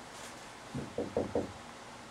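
Marker writing on a whiteboard: four quick, low knocks of the pen against the board, about a fifth of a second apart, starting just under a second in.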